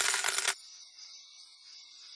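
Gonzo's Quest slot-game win sound effect: rapid clinking of pouring coins that cuts off suddenly about half a second in. After it, only the game's faint, steady jungle insect ambience is left.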